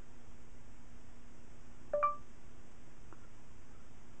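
Android phone's voice-typing start tone: one short electronic chime about halfway through, the signal that the keyboard's microphone has begun listening for dictation.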